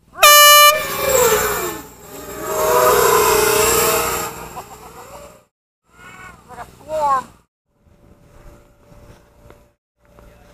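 A short horn blast, held on one pitch for about half a second, sounds as the race start signal. Several FPV racing quadcopters then launch at once, their motors whining and wavering in pitch for about four seconds. Shouting voices follow, and then only faint motor noise.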